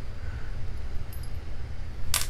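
Steady low background rumble, with a faint light click about a second in.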